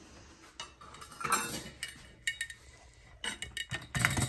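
Metal pizza pan clinking and knocking as it is handled on a kitchen counter: a few scattered sharp clinks, with a quick cluster of them near the end.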